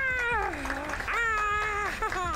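A young man screaming with excitement in two long, high yells. The first dies away about half a second in, and the second rises and holds through most of the second half.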